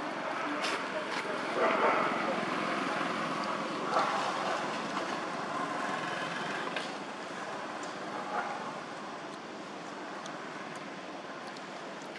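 Outdoor background of indistinct voices over a steady hiss, with a few louder moments about two and four seconds in, then a little quieter toward the end.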